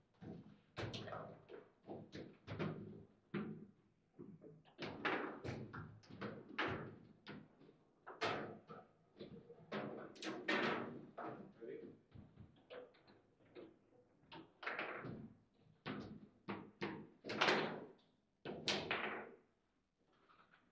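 Foosball play: irregular sharp clacks and knocks of the ball striking the plastic men and the table walls as the rods are worked, with a goal scored partway through.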